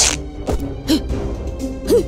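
Fabric tearing sound effect as a dress is pulled apart in a tug-of-war, a short harsh rip at the start followed about half a second later by a sudden thump, over background music.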